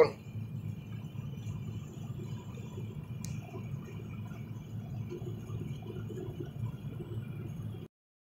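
Steady low rumble of a car being driven, heard from inside the cabin, with a single sharp click about three seconds in.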